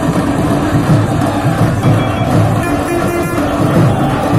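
Procession drums beating in a loud, dense rhythm, mixed with traffic noise, and a short high-pitched tone like a horn sounding briefly just past the middle.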